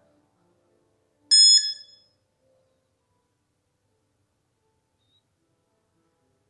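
A single short electronic ding from an Android phone's control app, the app's button-press sound, fading out within about half a second. The rest is near silence.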